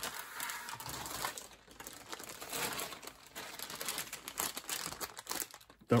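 Clear plastic bags around model-kit sprues crinkling and rustling as they are handled and lifted, in irregular bursts with a brief pause just before the end.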